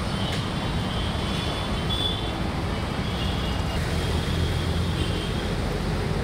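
Steady rumble of road traffic, with faint high-pitched tones coming and going above it.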